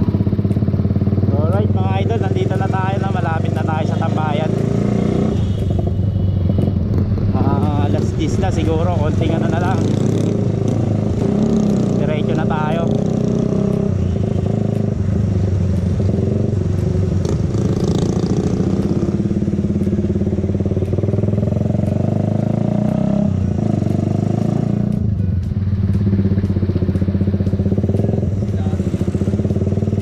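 Motorcycle engine running steadily under the rider in traffic, its note shifting a few times with throttle, mixed with wind noise on the microphone.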